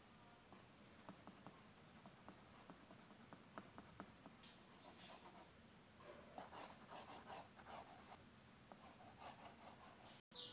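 Faint scratching of a graphite pencil on paper in quick, repeated shading strokes. The strokes grow denser and louder about six seconds in.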